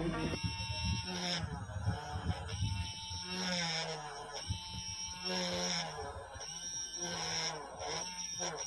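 Small DC toy motor running with a pen fixed on its shaft, its whine wavering in pitch and breaking up about once a second as the spinning pen tip is pressed on paper to write.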